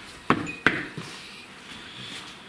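Two sharp knocks in quick succession, about a third of a second apart.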